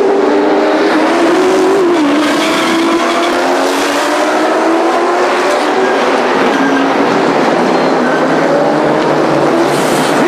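Stock car doing a burnout: its engine held at high revs while the tires spin on the pavement. The engine note wavers slowly up and down over a steady rush of tire noise.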